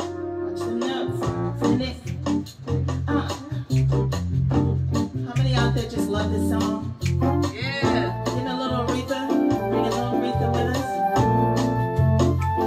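Live band playing a steady groove: organ-toned keyboards over a repeating bass line and drums.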